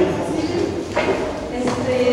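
A woman speaking Spanish into a handheld microphone, her voice carried over a PA system.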